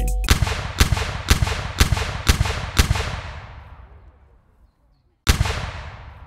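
Six sharp, echoing bangs about two a second, like a burst of gunfire, their echo fading out; after a short silence, one more bang a little after five seconds in.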